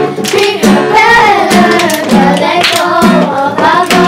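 A girls' choir singing together, accompanied by a strummed acoustic guitar, with sharp rhythmic strokes running through the music.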